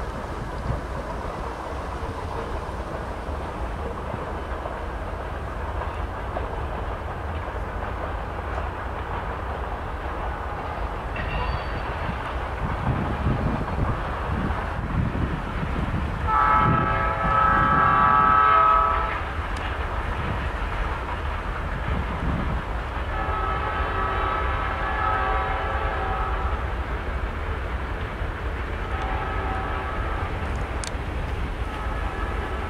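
Diesel locomotive air horn sounding a chord as the train nears a grade crossing. A loud long blast comes about halfway through, then a second, softer long blast, and a short one near the end. Under it runs the steady rumble of two passing EMD GP40-2 freight locomotives, with wind on the microphone.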